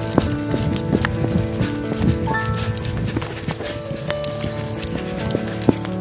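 Quick footsteps of a hiker hurrying along a dirt forest trail, irregular knocks two to three a second, over background music.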